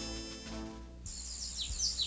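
Held background music fading out over the first second. Outdoor ambience follows: small birds chirping in short falling notes over a thin, steady high tone.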